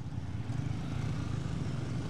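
Outdoor street ambience: a steady low rumble of road traffic.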